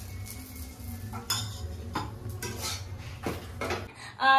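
Metal clinking and scraping against a black kadhai on a gas stove as a flatbread is turned in it: several irregular clinks over a steady low hum.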